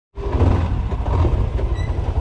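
Side-by-side utility vehicle's engine running with a steady, pulsing low rumble.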